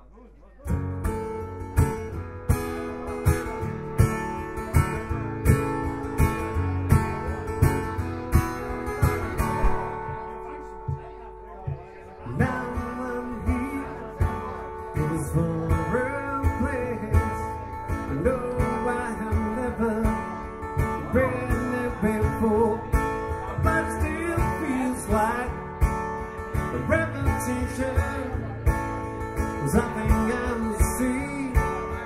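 Acoustic guitar strummed in a steady rhythm, starting about half a second in. From about twelve seconds in, a man's singing voice joins the guitar.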